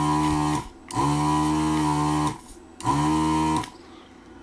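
ZD-915 desoldering station's vacuum air pump running in three short bursts, about a second each, as the desoldering gun's trigger is pressed to suck up molten solder. Each burst is a steady, noisy motor hum that winds up as it starts and winds down as it stops.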